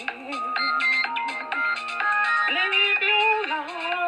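Music: a woman singing long, wavering notes over electronic keyboard tones. Her voice steps up in pitch about two and a half seconds in.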